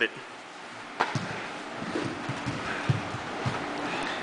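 Jiu-jitsu grappling on a padded mat: scuffling of bodies and gi cloth, with one sharp knock about a second in and a few soft thuds later.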